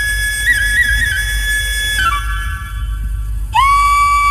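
Flute melody of long held notes with small ornamental turns, over a deep steady hum. The flute breaks off about two seconds in, and about a second and a half later comes back on a lower note that slides up into place.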